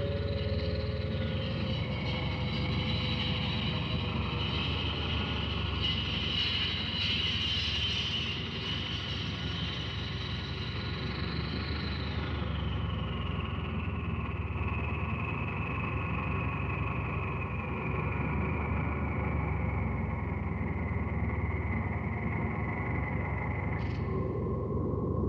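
Electronic drone soundtrack: a dense, steady low rumble under several held high tones. The upper tones slowly slide down in pitch over the second half.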